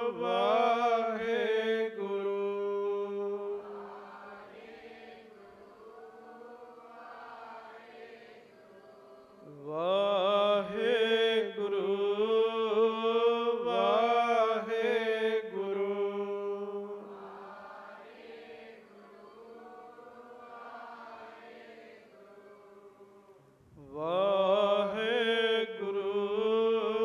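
A man chanting a devotional phrase in long sung lines over a steady held drone. The loud lines come near the start, in the middle and again near the end, with quieter, fainter singing between them.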